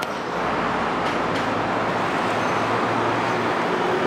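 Steady city street traffic noise from cars on the road, with a low steady hum joining about a second in.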